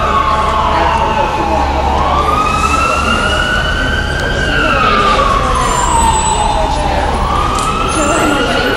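Emergency vehicle siren in a slow wail, its pitch sliding down, up and down again and starting to rise once more near the end, roughly one full rise and fall every five seconds.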